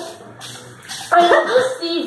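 A boy's voice, starting about a second in, making a short pitched, wavering vocal sound while he grimaces over the toothpaste he has tried to swallow; before it there is only faint rustling.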